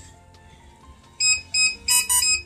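Rapid electronic beeping, about three beeps a second, starting a little over a second in, from a DJI remote controller in linking mode while it searches to pair with the DJI Mini 2 drone.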